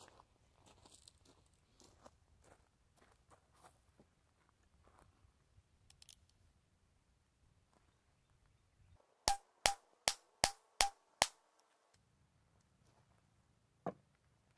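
Six quick shots from a Heritage Rough Rider .22 single-action revolver with a 16-inch barrel, fired about 0.4 s apart starting about nine seconds in. Before them come a few faint clicks of the gun being handled.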